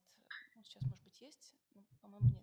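Faint, quiet speech in short fragments, about a third of a second and nearly a second in, with low room tone between.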